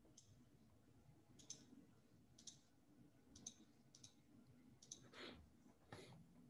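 Near silence with faint, sharp clicks about once a second, typical of a computer mouse being clicked while slides are changed.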